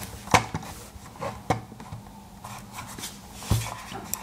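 Plastic Logitech M705 Marathon wireless mouse being handled and turned over in the hands: a handful of separate knocks and taps, the sharpest near the start, and a dull thump near the end.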